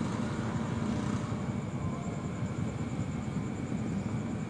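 Steady low rumble of motorcycle engines, with a faint steady high whine over it.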